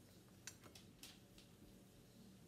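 Near silence: faint room tone with a few soft clicks, about half a second, one second and one and a half seconds in.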